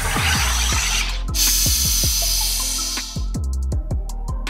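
Aarke soda maker carbonating a bottle of water: gas hisses into the water for about a second, stops briefly, then hisses again for about two seconds at a higher pitch. Background music with a steady beat plays underneath.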